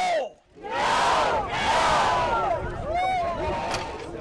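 Call-and-response shouting at a rally: a man shouts a brief call and the crowd answers with a loud, sustained mass shout of many voices that fades away near the end.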